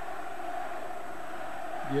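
Football stadium crowd, a steady din of many voices heard through the broadcast sound.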